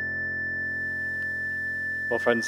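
Keyboard holding the final chord of a hymn tune, a steady sustained chord with no new notes and a pure high tone standing out above it.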